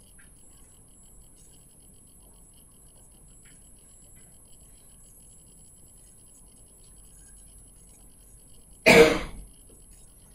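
A single loud cough close to the microphone near the end, over faint room tone with a thin, steady high whine.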